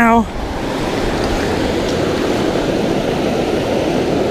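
River water rushing steadily over rocks in a rapid.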